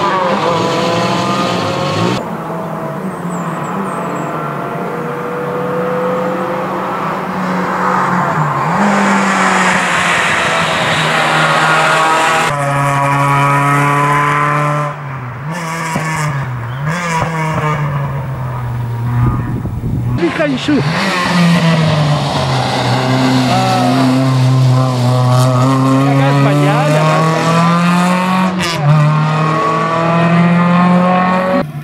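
Renault Clio hillclimb car's engine at full throttle, revving hard. The pitch climbs and drops again and again with gear changes and lifts for corners, and the sound changes abruptly a few times where the footage cuts.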